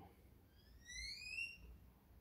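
A faint high whistle-like tone that rises steadily in pitch over about a second, starting about half a second in.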